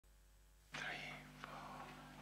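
A faint whispered voice about three quarters of a second in, over a low steady hum.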